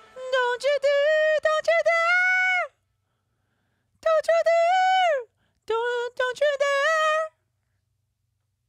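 A soloed recorded male vocal track, sung high, plays without backing in three short phrases with dead silence between them. The first two phrases end in a downward slide.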